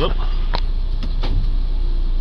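Ford Transit diesel engine idling steadily just after start-up, at about 1000 rpm, heard from inside the cab. A couple of faint clicks sound over it.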